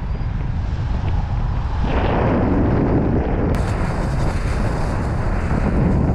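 Heavy wind buffeting the microphone, a loud continuous low rumble, with an abrupt change in its tone about three and a half seconds in.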